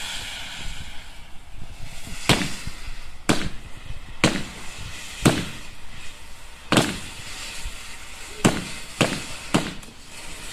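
Fireworks going off: about eight sharp bangs, roughly a second apart and coming closer together near the end, over a steady hiss.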